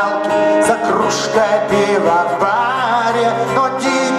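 Male vocalist singing live into a microphone over acoustic band accompaniment, his voice sliding and bending between held notes.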